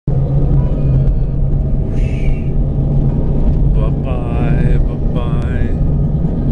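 A steady low rumble, with a high voice heard briefly about four seconds in and again about five seconds in.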